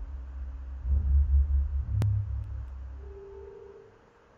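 Ambient soundtrack drone: a deep, throbbing low rumble that swells about a second in and slowly fades. A single sharp click comes about two seconds in, and a soft held tone sounds near the end.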